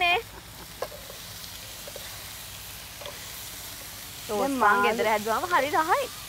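Fish and vegetables sizzling steadily in a frying pan, with a few faint utensil ticks. A laugh comes at the start, and voices return about four seconds in.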